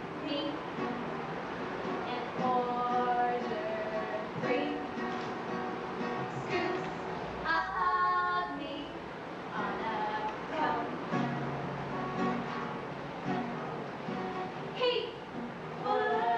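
Two women singing a song together, accompanied by a strummed acoustic guitar.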